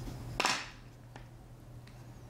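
A single short, crisp snip of fly-tying scissors cutting through trimmed moose hair butts about half a second in, followed by two faint ticks.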